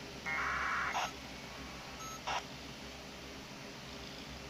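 Amateur radio in the background giving a brief buzzy burst of digital tones, under a second long, followed by two short clicks about a second and a half apart.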